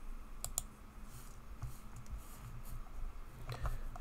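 A few sparse key clicks on a computer keyboard, two close together about half a second in, with fainter taps later.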